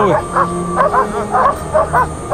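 A pack of Yakut Laika sled dogs barking and yipping, short high calls coming about three to four a second, over steady background music.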